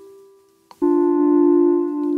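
Roland S-1 synthesizer note fading away, a brief click, then a new steady synth note with a rich set of overtones starting just under a second in and held.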